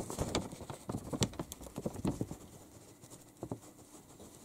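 Newspaper being handled close to the microphone: an irregular run of paper crackles and taps during the first two seconds or so, then one more about three and a half seconds in.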